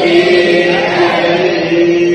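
Devotional chanting: a voice holds one long, steady note that wavers slightly in pitch.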